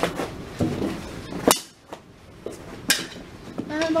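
Knee-hockey play: two sharp clacks, a mini hockey stick striking the small plastic ball or the ball hitting the net frame, about a second and a half in and again about three seconds in, with softer knocks between.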